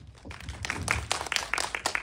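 Audience applauding: many hands clapping together, building up about half a second in and carrying on steadily.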